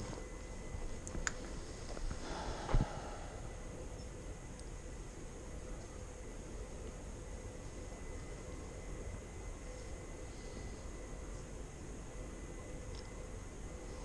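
Quiet outdoor ambience: a faint steady hiss, with a brief rustle of the rider's gear and two small clicks in the first three seconds as a phone is handled.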